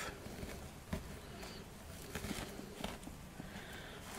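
Faint rustling and light handling noises as a pheasant feather's quill is poked into a dry moss-covered wreath form, with one sharp tap about a second in.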